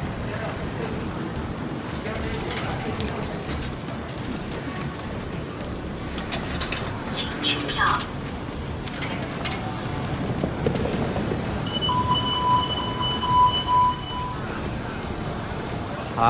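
Train-station concourse ambience: a steady low hum with murmur and footsteps. A cluster of clicks and clacks comes as an automatic ticket gate is passed about six to eight seconds in. A steady high electronic beep follows, lasting about two seconds.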